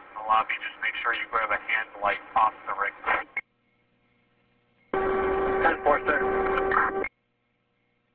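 Speech over a police two-way radio, tinny and hard to make out, lasting about three and a half seconds. After a short gap a second transmission starts abruptly with a steady hum under the voice and cuts off suddenly about seven seconds in.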